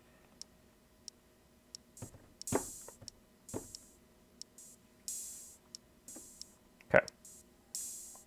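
Elektron Model:Samples drum samples triggered from its built-in pads, four or five hits of uneven loudness over a steady soft tick about every two-thirds of a second. The pads register mostly low velocities even when tapped firmly, so some hits come out barely audible.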